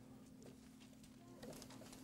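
Near silence: room tone with a steady low hum and a few faint clicks and rustles, one slightly louder rustle about one and a half seconds in.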